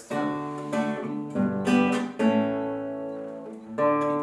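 Nylon-string classical guitar strummed in a syncopated Latin rhythm, with anticipated strums and pauses made by the right hand. A few quick strums come in the first half, then one chord is left to ring for about a second and a half before a new strum near the end.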